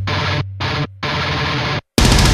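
A muffled, filtered passage of a death metal track cut into stop-start stabs, with a low held bass note under the first half. Near the end it drops to silence for a moment, then the full band crashes back in.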